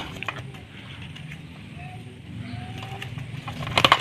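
A sooty-headed bulbul beating its wings and pecking as it grips and fights a man's hand, heard as scattered flaps and sharp clicks with a quick cluster of clicks near the end. A low hum runs underneath.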